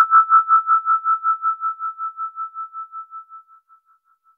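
A single sustained electronic keyboard note with fast tremolo, pulsing about five times a second and fading away by near the end.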